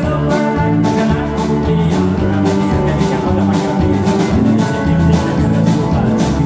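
A live country band playing: electric guitars, electric bass and a drum kit keeping a steady beat.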